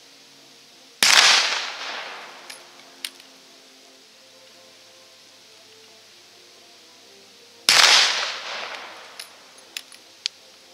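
Two black-powder shots from .577/450 Martini-Henry rifles, about seven seconds apart, each with a long echoing tail. A few short sharp clicks follow each shot.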